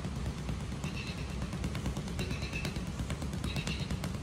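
Rapid, continuous flurry of gloved punches thudding into a hanging heavy bag, short fast strikes one after another.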